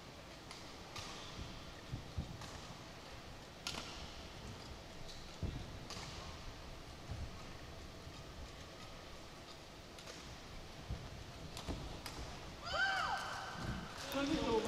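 Badminton rally: sharp racket-on-shuttlecock strikes every second or two, with low thuds of footwork on the court.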